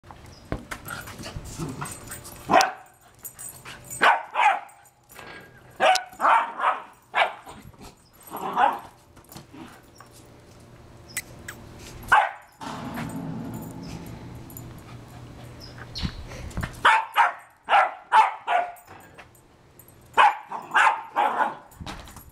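Small dog barking in short, sharp bursts, often several in quick succession, with pauses between clusters: excited barking at play with a ball.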